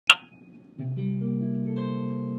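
A sharp click at the very start, then an electric guitar chord picked string by string from about a second in, its notes entering one after another and ringing on together.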